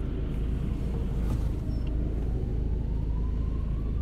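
Steady low rumble of street traffic heard from inside a car cabin as a car drives past, with a faint rising whine in the last two seconds.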